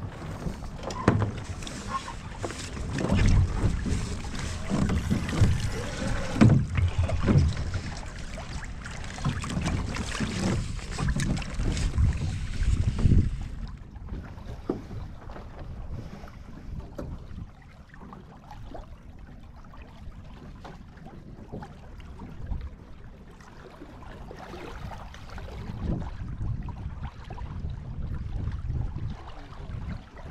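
Wind buffeting the microphone and water rushing along the hull of a small sailing dinghy under way, in gusty low rumbles that are strongest in the first half and ease off about thirteen seconds in.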